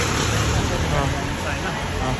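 Steady street traffic noise on a wet road, an even hiss with a low engine hum from vehicles nearby, under a few spoken words.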